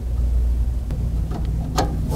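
A steady low rumble throughout, with a few light clicks from the buttons of a lighting control panel's membrane keypad being pressed about a second in.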